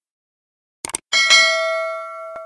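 A quick click sound effect, then a bright bell chime struck about a second in that rings out and fades over a second and a half. These are the sound effects of a subscribe-button and notification-bell animation.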